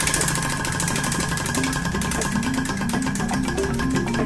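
Prize wheel spinning: a rapid, even run of clicks as its pegs strike the pointer.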